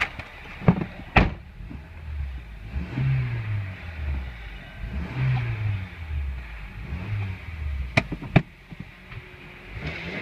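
2003 Honda Accord's 2.4-litre four-cylinder engine running in place, revved in about three short blips, its pitch dropping back after each. A few sharp knocks come near the start and about eight seconds in.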